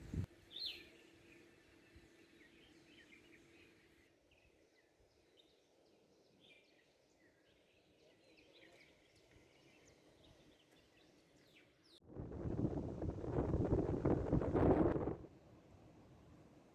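Faint birds chirping over quiet outdoor ambience. Near the end comes about three seconds of loud, even rushing noise, then it drops back to quiet.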